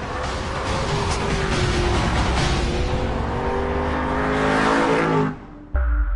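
Aston Martin V8 Vantage's 4.3-litre V8 running under load, with tyre and road noise, its note holding fairly steady. The engine sound cuts off about five seconds in, and music with a regular plucked beat starts just before the end.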